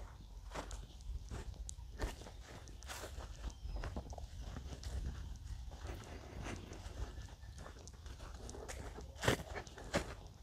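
Footsteps walking at an irregular pace over grass and bare dirt, heard as scattered soft crunches and scuffs over a steady low rumble. A sharper knock about nine seconds in is the loudest sound.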